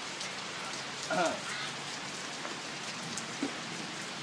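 Steady rain falling, an even hiss of drops with no break.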